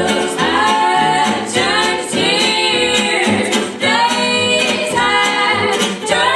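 Live western swing: female voices singing close three-part harmony, with an upright bass plucking a steady beat and a guitar strumming chords underneath; the fiddles are silent.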